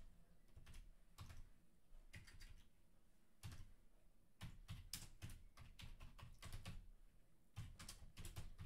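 Faint typing on a computer keyboard: runs of quick keystrokes, with a pause of about a second midway and a faster run in the second half.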